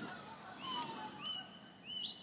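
Songbirds singing outdoors: a run of short, high whistled chirps and slurred notes, some gliding up or down, over faint background noise.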